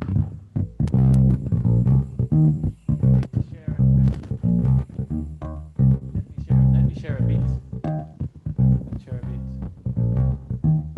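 Bass guitar playing a line of short plucked low notes, heard over a video-call stream.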